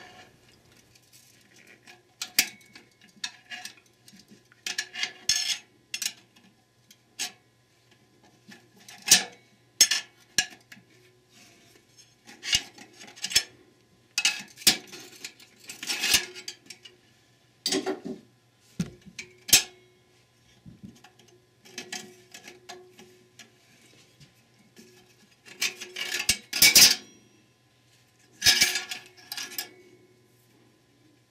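A large screwdriver prying a large-diameter steel snap ring out of its groove in an aluminium Ford E4OD transmission case: irregular metallic scrapes and clinks of metal on metal, the loudest a few seconds before the end.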